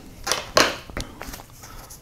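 A few light knocks and rustles as small items are handled and set down on a wooden desktop.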